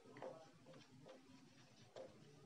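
Near silence with a few faint, irregular ticks of a marker pen writing on a whiteboard.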